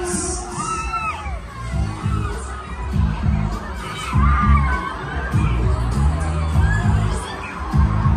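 Riders on a spinning fairground ride screaming and shouting, over the ride's music with a heavy rhythmic bass that comes in about two seconds in.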